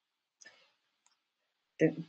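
A few faint short clicks in near silence, then a short, louder click near the end.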